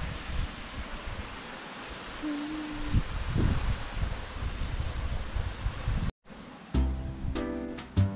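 Steady outdoor noise for about six seconds, then a sudden cut and plucked-string background music with an even beat.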